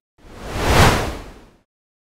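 A single whoosh transition sound effect: a rush of noise that swells to a peak just under a second in and fades away by about a second and a half.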